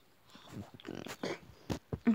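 A baby's soft grunts and breaths close to the phone microphone, with a few sharp handling knocks near the end.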